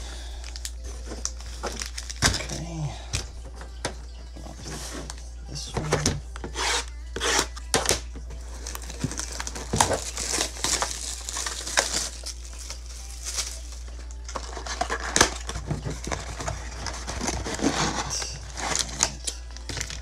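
Foil trading-card packs and plastic wrapping being handled: bursts of crinkling and rustling with sharp clicks and taps as the packs are shuffled and set down, over a steady low hum.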